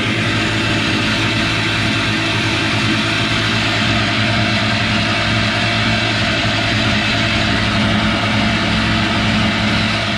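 Two-stroke personal watercraft engine idling steadily while it is flushed with a garden hose after a saltwater ride, with water splashing out of the jet pump onto concrete.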